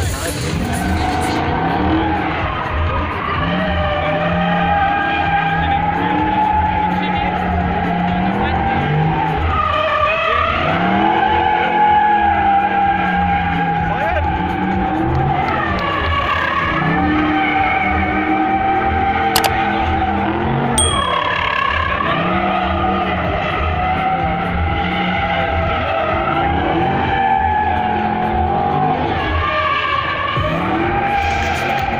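Dodge drift car's engine held at high revs through a drift, its revs dipping and climbing again every few seconds, with tyres squealing and skidding on the asphalt.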